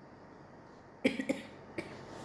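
A woman coughing: a quick cluster of coughs about a second in, then one more shortly after.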